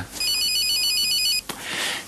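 Electronic telephone ringing: a single warbling ring that trills rapidly between two high pitches, lasting a little over a second.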